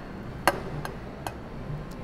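A few sharp taps of a ceramic bowl against the stainless steel bowl of a stand mixer as flour is tipped and shaken out of it. The loudest tap comes about half a second in.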